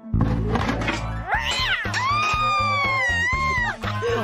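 A cartoon cat's long yowl, rising, held and then falling away, over background music.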